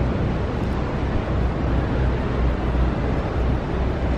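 Wind buffeting the microphone: a steady low rumble that swells and fades unevenly, with a wash of outdoor noise over it.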